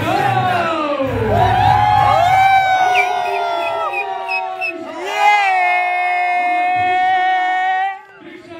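A crowd cheering and whooping, with several yells falling in pitch, then a man's voice through a microphone holding long drawn-out notes. The sound cuts off suddenly at the end.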